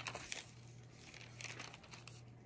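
Faint rustling and crinkling of paper sheets being handled, in short bursts at the start and again about a second and a half in, over a low steady room hum.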